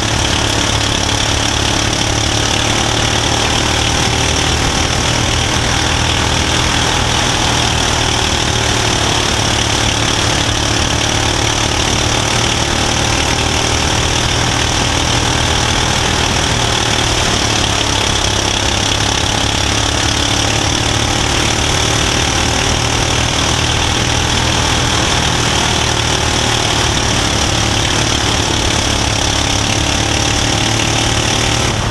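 Mini Cup race car's engine running steadily under way on a dirt oval, heard from inside the cockpit, with no large rises or drops in pitch.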